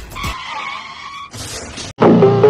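Tyre screech of a skid, followed about a second and a half in by a burst of high hiss that cuts off suddenly just before the end.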